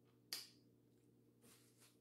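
Near silence while eating, with one short, sharp mouth click about a third of a second in and two faint smacks later.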